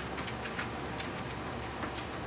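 Horizon treadmill running at a slow speed, a steady hum of motor and belt, with light irregular ticks of a dog's paws and claws stepping on the moving belt.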